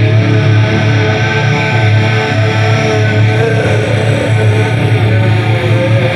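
Heavy metal with a high-gain distorted electric guitar riff, a Solar A2 played through a simulated Peavey 5150 preamp and Mesa Boogie cabinet, loud and continuous over the song's backing track with no vocals.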